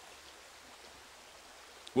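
Faint steady rushing of a shallow stream running over rocks.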